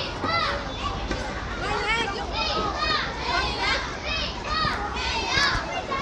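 Many young children talking and calling out at once, high-pitched overlapping voices.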